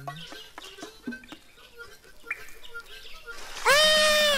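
Quiet yard ambience with scattered small clicks and faint bird-like calls, then near the end a man's sudden, loud scream as he is splashed.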